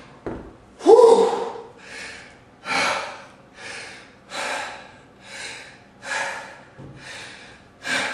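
A man panting hard, catching his breath after exertion: loud, heavy breaths about one a second, with a voiced gasp about a second in.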